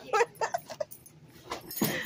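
A person laughing in a few short bursts in the first second, then a louder, higher-pitched laugh near the end.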